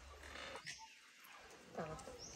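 Faint animal calls over low background noise.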